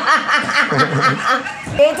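A woman laughing: a quick run of short chuckles that dies away about a second and a half in.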